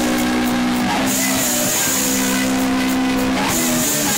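Heavy metal band playing live: heavily distorted electric guitars hold long power chords that change every second or so, over drums with washing cymbals, loud in a small room.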